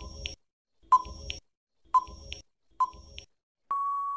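Quiz countdown timer sound effect: a short sharp beep about once a second, then one longer steady beep near the end as the timer runs out.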